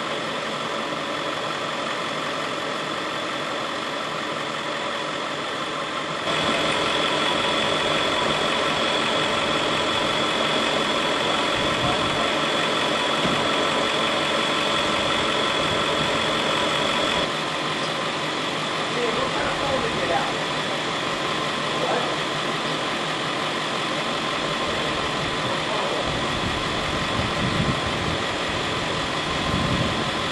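Parked emergency vehicles idling: a steady engine hum with several steady tones. It steps up in level about six seconds in and drops back around seventeen seconds. Faint voices come in during the second half.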